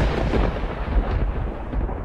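A clap of thunder rumbling, loud at first and fading away near the end.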